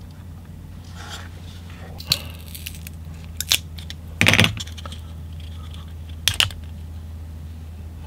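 A few short clicks and clinks of handling noise as the pried-open plastic power bank shell and its cell are turned over in the hands among small tools, the loudest a little over four seconds in. A low steady hum runs underneath.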